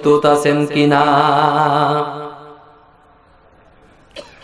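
A man's voice chanting a sermon line in the melodic, sing-song style of a Bengali waz, amplified through a microphone. It runs in short sung syllables, then holds one long note with a wavering pitch that fades out about two seconds in.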